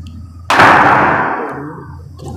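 A sudden, loud burst of noise about half a second in, fading away over a little more than a second.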